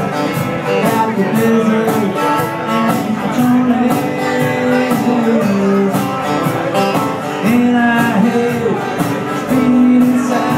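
Live acoustic band: several steel-string acoustic guitars strumming, with a held, bending lead melody line over them and no sung words.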